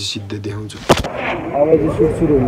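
A single sharp bang a little under a second in, the loudest moment, between stretches of a man talking.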